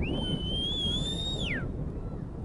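A single high whistled note, held for about a second and a half with a slight waver, then sliding down and stopping, over a steady low background rumble.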